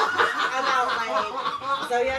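Several people laughing and chuckling together, overlapping, with snatches of talk mixed in.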